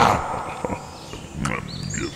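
Cartoon animal vocal sounds: a loud pitched call trails off at the start, followed by quieter short grunts and clicks.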